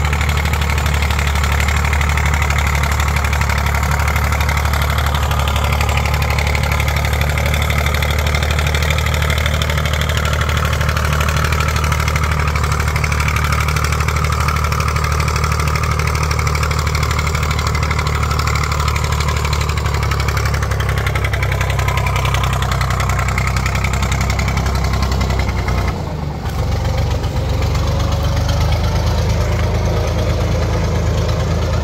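IMT 549 DV tractor's diesel engine running steadily while it drives a rear-mounted atomizer mist-blower sprayer, whose fan adds a rushing hiss over the engine note. The sound drops briefly for a moment near the end.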